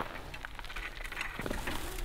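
Faint, scattered crunching on gravel from footsteps walking away and a rope dragging over the ground.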